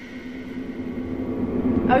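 A woman's voice drawing out one long held vowel at a steady pitch, getting louder toward the end.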